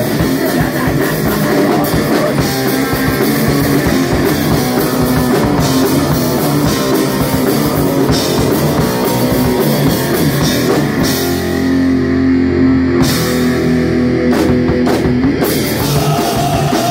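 Live heavy rock band playing loud: distorted electric guitars, bass and drum kit together. About eleven seconds in the cymbals drop out and the guitars hold sustained chords, broken by a few crash hits near the end.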